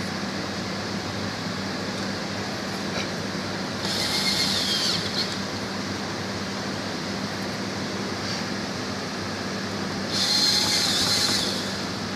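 Cordless drill driving screws into a sheet-metal electrical box cover, in two short runs about four seconds in and about ten seconds in. Under it, the steady hum of a running refrigeration condensing unit and its fan.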